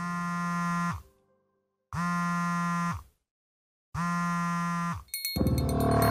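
A pitched electronic buzz sounds three times, each about a second long and about two seconds apart, with dead silence between. Each buzz slides down in pitch as it stops. About five seconds in, loud electronic music begins.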